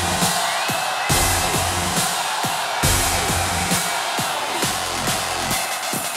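Live electronic dance music triggered from a drum-pad MIDI controller: a heavy bass line that cuts in and out, with drum hits that drop quickly in pitch in a steady beat. A short rising tone sounds about one and a half seconds in.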